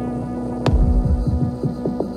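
Industrial electronic music in a sparse passage: a steady low droning hum with one sharp percussive hit about two-thirds of a second in, followed by a few lighter clicks.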